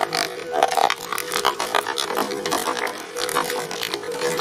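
Twin-shaft shredder crushing a pressurised aerosol air-freshener can: dense crunching and crackling of the metal can as the blades tear it, with the escaping spray hissing, over a steady tone from the running shredder.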